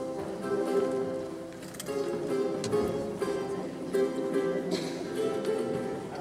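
An ensemble of many ukuleles strumming chords together, playing an instrumental passage with no singing.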